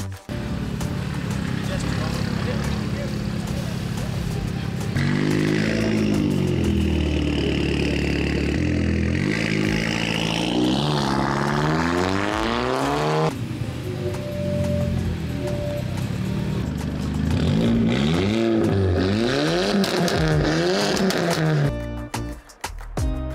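A car engine running and being revved repeatedly, its pitch climbing and dropping several times, with background music underneath. The sound cuts abruptly about five seconds in and again a little past the middle.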